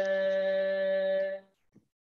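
A man's voice holding one long, steady chanted note of a Tamil devotional hymn. The note breaks off about one and a half seconds in, leaving a short silent gap before the chanting resumes.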